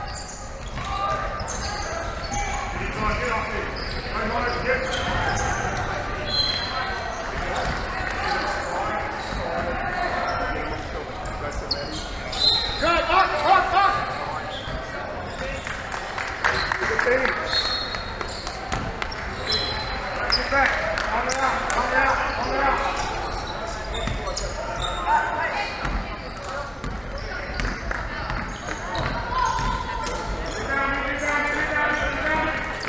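Basketball bouncing on a hardwood court, with voices of players and spectators calling and chatting throughout; the voices get louder for a moment about 13 seconds in.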